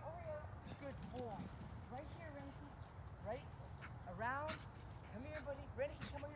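A dog barking repeatedly in short, high calls that rise and fall in pitch, the loudest burst of barks about four seconds in.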